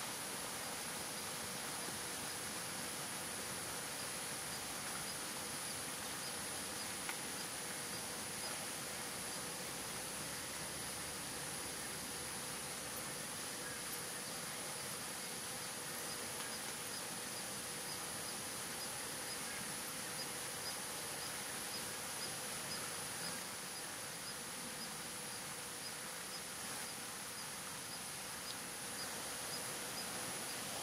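Insects calling outdoors: a constant high-pitched drone, with a faint, regular ticking call through the second half.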